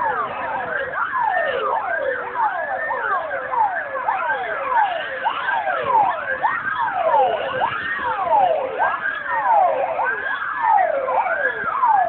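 Sirens of several fire engines sounding at once, their rising and falling wails overlapping out of step.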